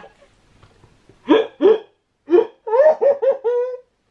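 A young man laughing hard in short, high-pitched bursts. The laughing starts about a second in and quickens into a rapid string of laughs near the end.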